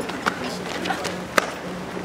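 Outdoor background of faint, indistinct voices over a steady low hum, with a sharp click about a second and a half in.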